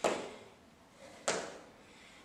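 Two landings of sneakered feet on a hardwood floor during side-to-side Heisman hops, each a sudden thud with a short ring-out, about a second and a quarter apart.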